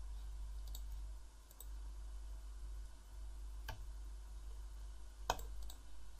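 A handful of separate computer mouse clicks, spaced irregularly, over a low steady hum.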